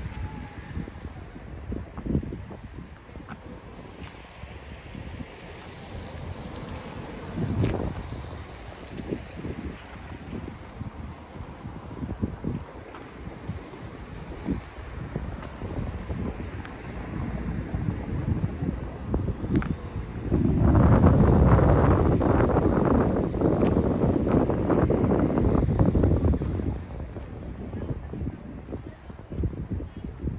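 Wind buffeting the microphone in uneven low rumbling gusts, with one much stronger gust starting suddenly about two-thirds of the way through and lasting several seconds.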